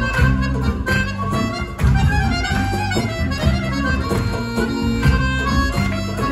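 Balkan folk band playing live: clarinet and accordion carry the melody over bass and guitar.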